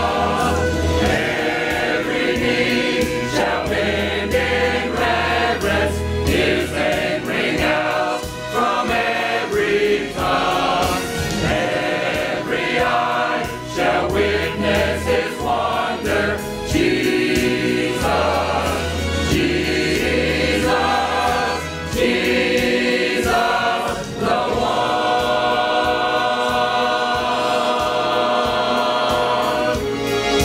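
Church choir of men's and women's voices singing a hymn together, with sustained low notes underneath.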